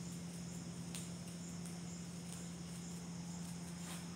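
Faint background room tone: a steady low hum under a regular, high-pitched chirping like insects, with a soft click about a second in as a marker writes on a whiteboard.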